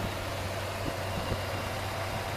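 1998 Ford Ranger's 2.5-litre four-cylinder engine idling steadily with the hood open, running smoothly, which the owner calls running sweet.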